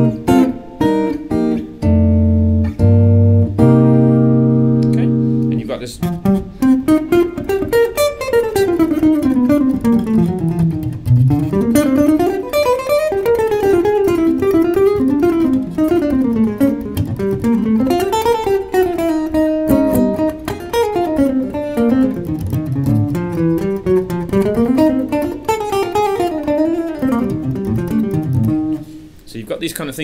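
Hollow-body electric jazz guitar played clean: a few held chords for about the first six seconds, then a long, fast, winding single-note improvised line that stops just before the end.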